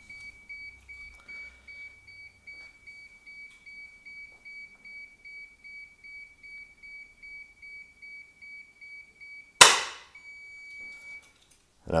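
Kelvatek Fusemate fault-closing unit sounding rapid high-pitched warning beeps, about three a second. Near the end it closes its contacts into the circuit with a single loud bang, followed by a steady beep for about a second.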